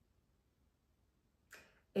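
Near silence, then a short in-breath about a second and a half in, followed by a woman starting to speak at the very end.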